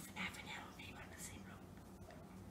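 Faint whispering over a low steady hum.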